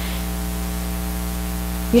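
Steady electrical mains hum with a layer of hiss, unchanging throughout.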